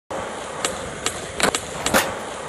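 Skateboard wheels rolling on a hard surface with a steady roll, broken by several sharp clacks of the board hitting the ground, the loudest near the end.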